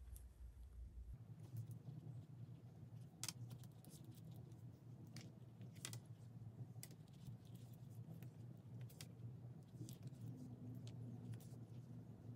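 Faint handling sounds of pinning fabric by hand: scattered small clicks and rustles as straight pins are taken from a pin cushion and pushed through layered fabric, over a low steady room hum.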